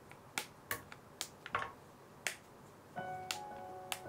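Irregular light clicks and taps at an aluminium saucepan of warm cream as it is stirred with a silicone spatula and chocolate pieces go in. Soft background music with sustained tones comes in about three seconds in.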